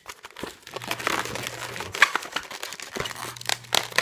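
Inflated latex modelling balloons rubbing and squeaking against each other and the hands as a long black balloon is twisted and wrapped around yellow balloon bubbles, in quick irregular bursts.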